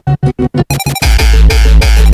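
Hard tekk electronic dance music: chopped, stuttering synth stabs at about eight to ten a second, then about a second in a heavy kick drum and deep bass come in, beating about three times a second.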